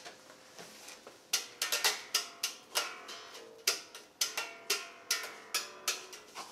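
Strings of an Ibanez TMB100 Talman electric bass struck by hand, giving a run of short, clicky notes, about three a second, that starts about a second in.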